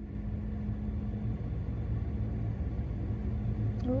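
Steady low road rumble of a car driving, heard from inside the cabin.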